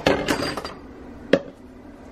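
Plastic measuring jugs clattering as they are picked up and moved about on a stone countertop. One is knocked down sharply a little over a second in.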